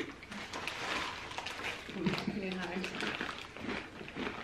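Quiet, low voices in a lull of conversation, with faint crinkling and clicking as a plastic chip bag is handled.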